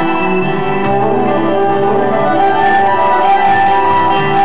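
Live folk-rock band playing an instrumental passage, with a bowed fiddle carrying the melody over sustained guitar and band accompaniment.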